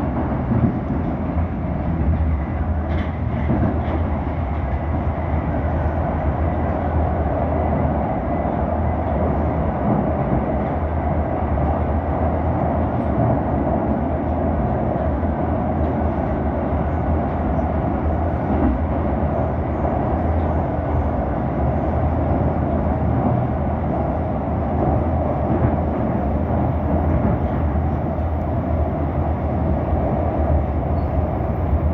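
Moscow Metro train running between stations, heard from inside the carriage: a steady rumble of wheels and traction motors with a continuous low drone.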